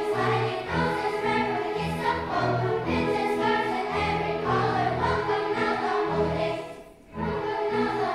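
Children's choir singing with a school orchestra accompanying, in a lively rhythmic arrangement. The music drops out briefly about seven seconds in, then comes back in.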